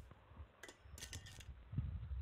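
A few faint, short clicks about half a second to a second and a half in, then a couple of faint low knocks, over low hiss.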